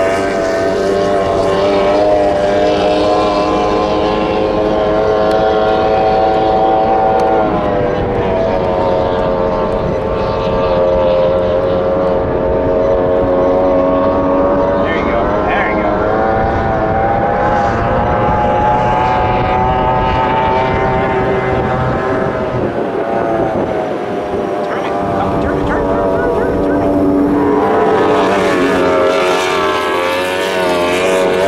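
High-revving outboard engine of a tunnel-hull race boat running at speed, its pitch falling and rising several times as it passes and turns, with a brief dip in level a little after twenty seconds.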